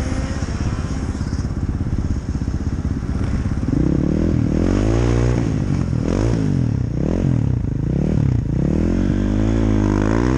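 Snowmobile engine running low and rough for the first few seconds, then revving up and down repeatedly from about four seconds in as the throttle is worked.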